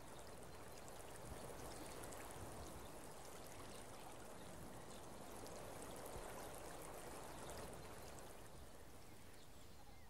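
Faint, steady wash of small waves lapping over a sandy shore at the water's edge, swelling slightly in the middle.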